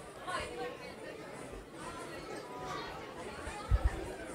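Indistinct chatter of several voices talking at once in a hall, with a short low thump just before the end.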